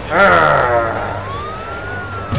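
A voice lets out a long, wavering 'oh' that falls in pitch. Then a single thin whistling tone glides upward and begins to fall slowly at the end.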